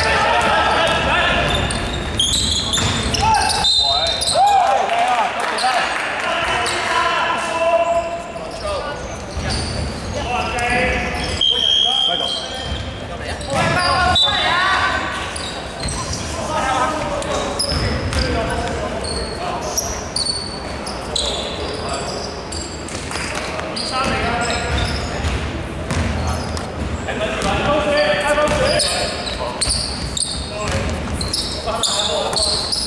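Basketball game play in a large echoing sports hall: the ball bouncing on a hardwood court, short shoe squeaks, and players' voices calling out.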